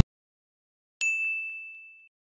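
A single bell-like ding, struck about a second in and ringing down over about a second: an editing sound effect that comes with an on-screen caption and arrow popping up.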